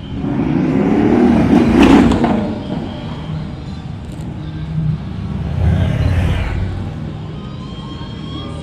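Cars driving slowly past one after another, their engines and exhausts running. One engine revs up, rising in pitch, to the loudest point about two seconds in, and a second vehicle passes close around six seconds in.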